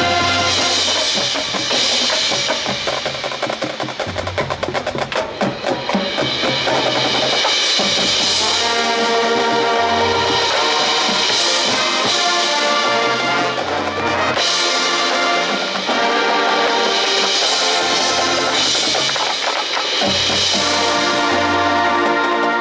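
High school marching band playing: sustained wind and brass chords over the drumline's snares and bass drums and the front ensemble's mallet percussion, with a stretch of fast snare drumming a few seconds in.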